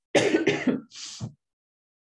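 A woman coughing into her hand: a quick run of several coughs, then a softer breath about a second in.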